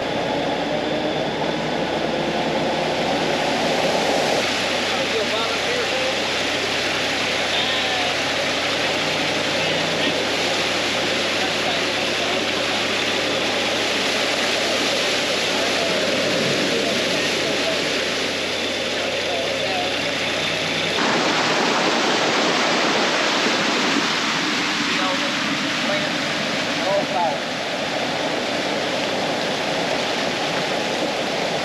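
A swamp buggy's engine runs with a steady drone while its huge tractor tyres churn and splash through flooded trail water in a continuous rushing wash. About two-thirds of the way in the engine's low hum drops out suddenly, leaving a water-like rushing noise.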